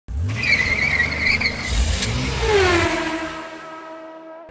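Car sound effect under an opening logo: tires squealing over engine noise, a sharp hit about two seconds in, then a falling tone that levels off into a steady hum and fades.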